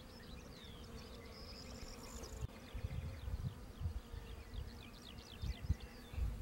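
Mud dauber wasp buzzing steadily, with rapid high chirping in the background through the middle and a few low thumps, the loudest near the end.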